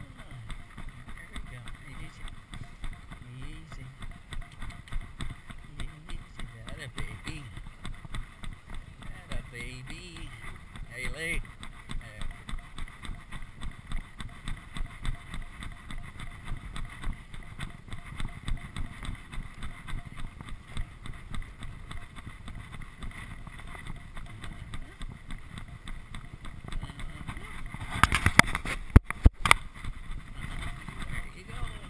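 Thoroughbred filly galloping on a dirt track: a rhythmic beat of hoofbeats about twice a second under wind rushing over a chest-mounted microphone. Near the end comes a quick run of loud sharp knocks.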